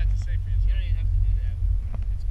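A man's voice talking over a steady low rumble, with wind buffeting the open camera microphone on a moving chairlift.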